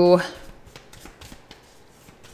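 A deck of tarot cards shuffled by hand: faint, soft flicking and rustling of the cards against each other.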